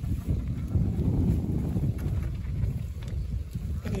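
Low, irregular rumbling noise on the microphone, with no calls or other distinct sounds standing out.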